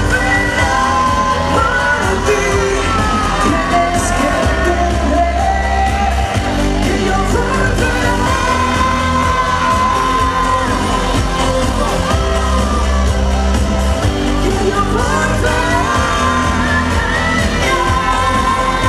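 A woman singing a pop song live into a microphone over amplified pop music with a heavy bass. She holds long notes and slides between pitches, with one long held note around the middle.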